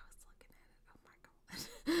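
A quiet stretch with a few faint clicks, then a woman's breathy laugh starting near the end.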